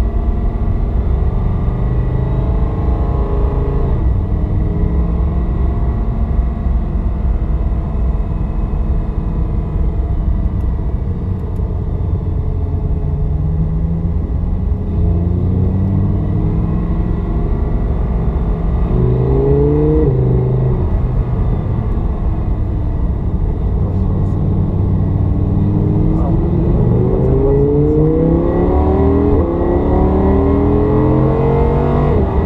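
Audi R8 V10 Plus's V10 engine heard from inside the cabin, running at low revs while rolling down the pit lane, then accelerating harder in the second half with the revs climbing and dropping back at each gear change.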